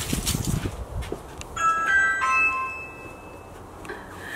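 Video doorbell pressed and playing its chime: a short tune of a few clear notes about a second and a half in, the last note ringing on for about a second.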